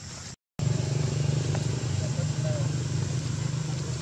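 A steady low motor drone that starts abruptly after a brief silent cut about half a second in, much louder than the sound before the cut.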